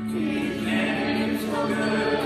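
A group of voices singing a gospel song together with an acoustic guitar. They hold one long note, then move on in the melody near the end.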